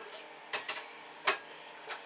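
A few faint, light clicks and taps, about four, from a small steel-and-plastic dipstick being handled in the fingers, over a low background hiss.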